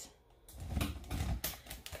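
Phone being adjusted on a small tripod stand: a quick run of clicks and knocks from the handling, starting about half a second in.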